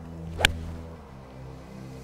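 A Mizuno MP20 MMC forged iron strikes a golf ball off the tee: a single sharp click about half a second in, over steady background music.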